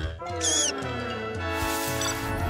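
Cartoon soundtrack: music with a pitched sound gliding downward over the first second and a half and a short high squeak about half a second in.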